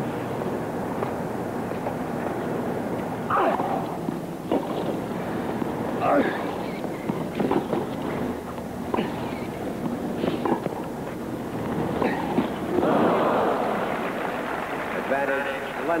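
A tennis rally on a stadium hard court: a string of sharp racket-on-ball strikes about every second and a half, starting a few seconds in, over steady crowd noise. The crowd breaks into cheering and applause about thirteen seconds in as the point is won.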